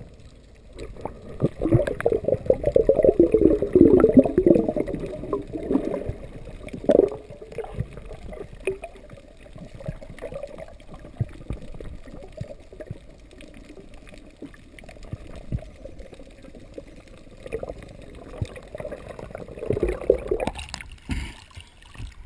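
Muffled underwater gurgling and bubbling, busiest in the first few seconds, then settling to a quieter steady rumble and swelling again shortly before the camera breaks the surface near the end.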